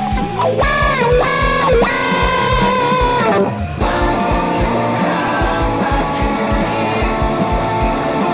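Les Paul-style electric guitar playing a lead line with bent notes over a rock backing track with a steady beat. About three and a half seconds in there is a short break, after which the band comes back in with fuller chords.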